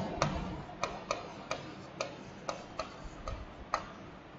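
A stylus tapping and clicking on a digital writing surface during handwriting: about ten sharp, irregular clicks in four seconds.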